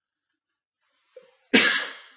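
A single sharp cough, sudden and loud, about one and a half seconds in, fading within half a second.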